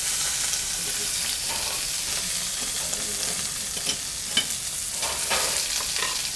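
Shrimp sizzling in hot oil in a pan, a steady hiss with a couple of light clicks about four seconds in.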